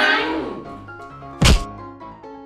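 Background music with one loud, short thud about one and a half seconds in, a transition hit. A group's voices trail off in the first half second.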